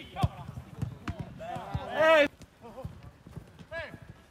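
Football players shouting on the pitch during play: one long, loud shout about a second and a half in and a shorter call near the end, over the short thuds of the ball being kicked and of running feet.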